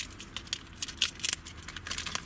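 Aluminium foil wrapping a burrito crinkling as it is unwrapped by hand, an irregular scatter of sharp crackles, along with a paper sticker being peeled off the foil.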